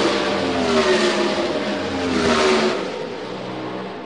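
Car engine running at high revs, its pitch sliding slowly down, with swells of rushing noise; it fades near the end.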